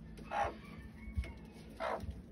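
Chickens giving two short clucks, one about half a second in and one near the end.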